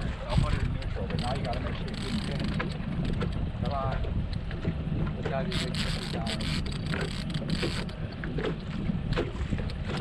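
Boat motor running steadily in gear at trolling speed, with wind noise on the microphone.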